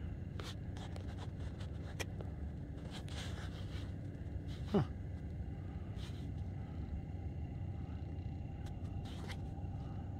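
Steady low outdoor rumble, with a few faint clicks and a short falling squeak about five seconds in.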